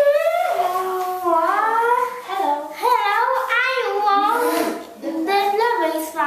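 A child's high-pitched, sing-song voice with drawn-out notes gliding up and down and no clear words; it dips briefly about five seconds in.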